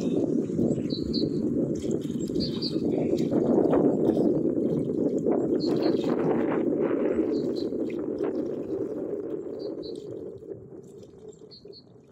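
Steady low rush of wind and choppy lake water, with a bird repeatedly giving short paired chirps; it all fades out over the last few seconds.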